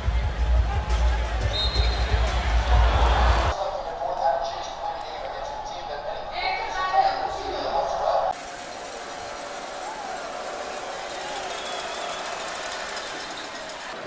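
Basketball arena sound: crowd noise and voices over deep bass from the arena's sound system. About three and a half seconds in it cuts to thinner crowd and voice sound without the bass, and drops again after another cut about eight seconds in.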